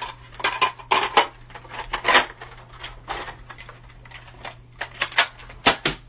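Plastic Nerf-style foam-dart blasters being cocked and handled: a series of sharp, irregular plastic clacks and clicks, bunched at the start, about two seconds in and near the end.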